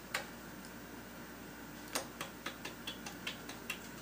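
Light metallic clicks and ticks of a thin steel tool working against the hub of a cast-iron drill-press pulley: a sharp click just after the start, another about two seconds in, then a quick, irregular run of small ticks.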